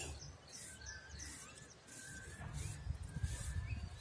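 Faint bird chirps over a low outdoor background noise, with a low rumble growing in the second half.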